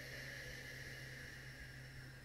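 A faint, long exhale of breath, a soft hiss that slowly fades out, over a low steady hum.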